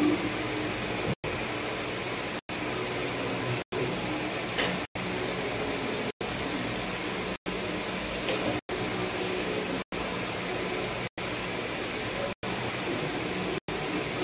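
Steady background hiss of room noise, broken by brief silent dropouts about every 1.2 seconds.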